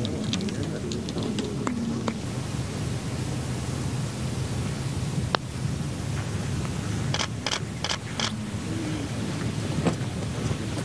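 Steady outdoor wind noise with a faint murmur of spectators. One sharp tap comes about halfway, and later a short run of four sharp claps.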